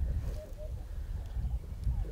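Wind rumbling on the microphone, an uneven low buffeting, with a few faint short chirps about half a second in.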